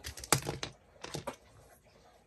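Light clicks and knocks of hard plastic RC car parts being handled on a workbench: a cluster in the first second, a couple more just after, then quiet handling.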